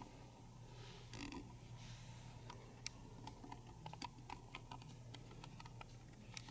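Near-quiet room tone: a steady low hum with faint, irregular small clicks and ticks scattered throughout.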